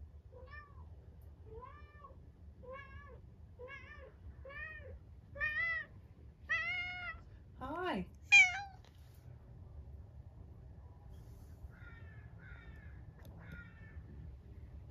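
Tuxedo cat meowing repeatedly while carrying a plush toy in its mouth, about one call a second. The calls grow louder and higher up to a loud, high cry about eight seconds in, followed by a few faint short calls near the end.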